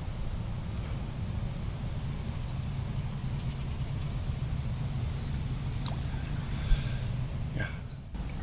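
Steady outdoor ambience: a constant low rumble under a high, even hiss, with one faint click about seven seconds in.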